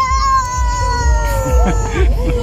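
Whistling fireworks: long, slowly falling whistles that overlap one another, over repeated low thuds of the shells being launched and bursting.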